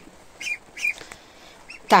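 Ducklings peeping: a few short, high calls.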